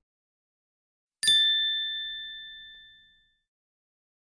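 A single bright ding sound effect, struck about a second in and ringing out, fading away over about two seconds. It is an editing chime marking the change to a new section's title card.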